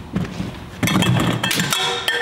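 A sudden loud clatter about a second in, then clinking with ringing metallic tones as a goblet is grabbed up off the table among other props.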